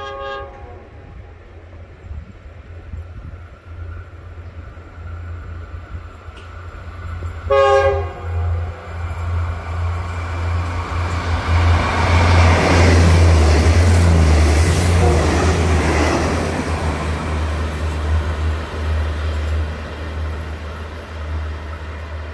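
Diesel express train approaching and running through the station without stopping. It gives one short horn blast about eight seconds in. A rush of wheel and engine noise then swells to its loudest just past the middle and eases off, over a steady deep engine hum.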